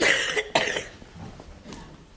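Two loud coughs about half a second apart.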